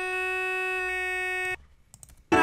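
A single sung vocal note played back from Logic Pro X's Flex Pitch editor with its vibrato and pitch drift turned down, held dead steady on F sharp so it sounds like an electronic tone. It lasts about a second and a half and cuts off suddenly.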